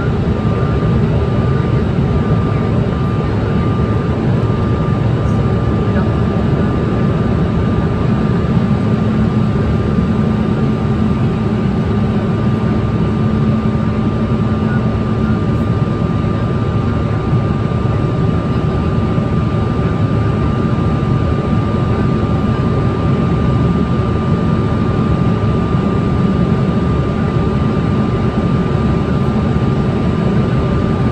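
Airliner cabin noise in flight: a loud, steady rush of engine and airflow noise with a thin steady whine above it, and a lower hum that comes in for several seconds near the middle.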